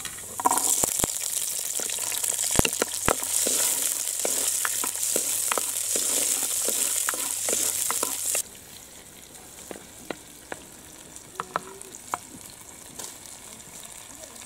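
Shallots and garlic cloves sizzling in hot oil in a pot, with the ladle clicking and scraping against the pot as they are stirred. The sizzle is loud and then drops suddenly to a much quieter sizzle about eight seconds in.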